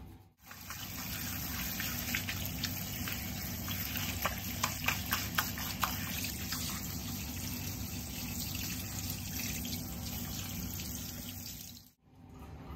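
Tap water running steadily, with a few short clicks about four to five and a half seconds in.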